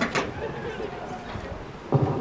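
Handling noise from a live vocal microphone being passed from one player to another: a sharp knock as it is gripped at the start, faint rubbing, then a low thump near the end as it is taken up.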